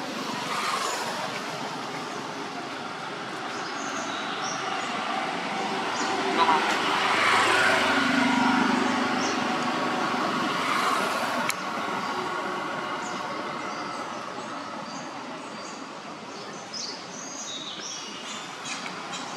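Outdoor background noise with a motor vehicle passing, swelling to its loudest about halfway through and fading again, and indistinct voices underneath.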